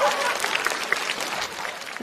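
Studio audience applauding, the clapping dying down toward the end.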